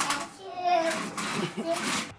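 A toddler's high voice making sounds without clear words while playing, rising and falling in pitch.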